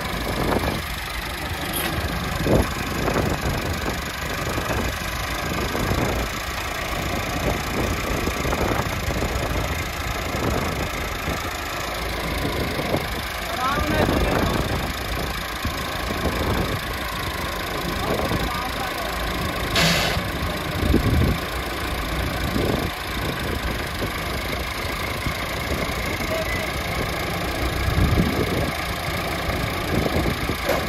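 Massey Ferguson tractor diesel engines idling steadily, with brief louder swells now and then and a sharp click about twenty seconds in.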